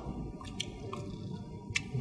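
Quiet wet chewing and mouth sounds of people eating, with a few light clicks, the sharpest near the end.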